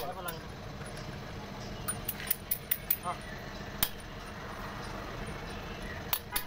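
Several light, sharp metallic clinks between about two and four seconds in, over a steady low background noise.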